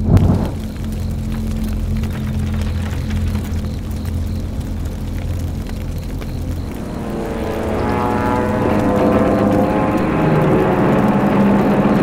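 A short whoosh as a signal fire flares up at the start. From about seven seconds in comes the drone of an approaching propeller aircraft, growing louder with a wavering pitch.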